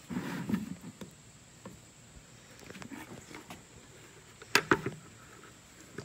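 A white plastic water jug being handled and turned over by hand on a wooden workbench: soft rubbing and light taps, with two sharp knocks close together about four and a half seconds in.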